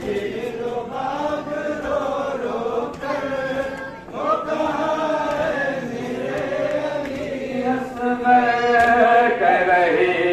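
Men's voices chanting a nauha, a Shia Muharram lament, in long held lines that rise and fall in pitch.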